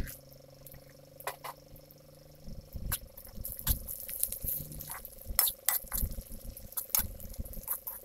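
Metal spatula stirring shallots and dried red chillies in an iron kadai of hot oil, with irregular clinks and scrapes against the pan from about two and a half seconds in. A single knock comes right at the start, and a faint steady hum runs underneath.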